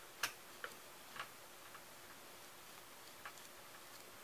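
A few faint clicks and taps from hands working with ribbon and glue on a crafting table, the first and loudest about a quarter-second in, over low room tone.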